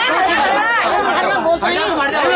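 Speech: a woman talking in Hindi with other voices chattering over her.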